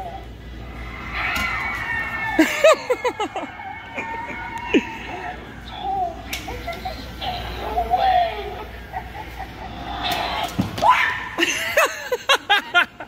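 A step-pad Halloween animatronic goes off with its recorded sound effects, and people laugh and shriek at the scare.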